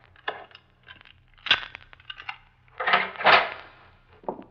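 Radio-drama sound effect of a guarded detention-room door being unlocked and opened: light metallic clicks and rattles, a sharp clack about a second and a half in, then a louder half-second clanking clatter of the heavy door about three seconds in.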